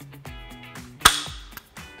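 A single sharp click about a second in: a Browning X-Bolt rifle dry-fired, its freshly adjusted trigger breaking and the firing pin snapping forward on an empty chamber. Background guitar music plays underneath.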